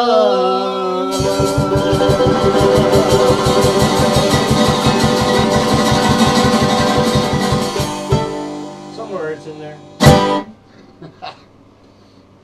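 Mandolin and acoustic guitar playing the end of a folk song. A held sung note opens it, then both are strummed fast and evenly for several seconds before the music fades. A single loud sharp hit comes near the end.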